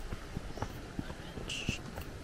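Footsteps on a paved concrete path at a steady walking pace, about two to three steps a second. A brief high-pitched sound comes about one and a half seconds in.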